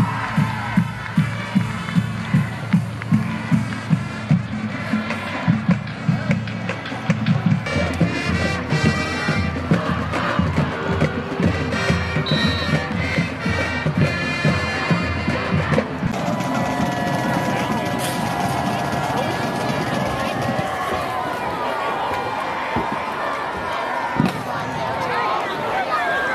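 High school marching band playing in the stands: a steady drumbeat about twice a second, with brass notes joining partway and crowd noise underneath. About two-thirds of the way in the sound changes suddenly to crowd noise with long held notes.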